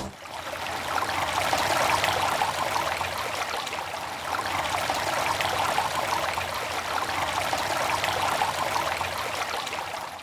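Steady rush of running water, like a stream, beginning suddenly and starting to fade away near the end.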